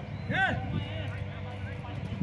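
A single loud shout about half a second in, over a steady low rumble and faint distant voices.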